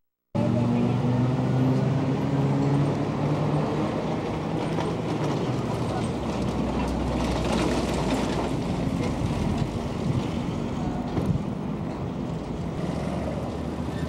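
City traffic noise: a steady rumble of vehicle engines and road noise, with a louder rushing swell about seven to eight seconds in, like a vehicle passing close by.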